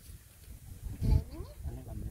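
Dogs making sounds while puppies are held to nurse at their mother: a short, loud, low sound about a second in, then a brief rising whine.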